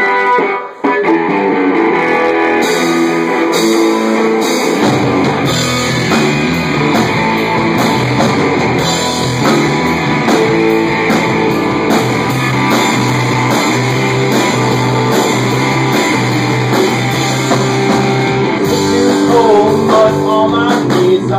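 A live rock band playing loud: electric guitar opens the song, drums and cymbals join a couple of seconds in, and low notes come in about five seconds in. A voice starts singing near the end.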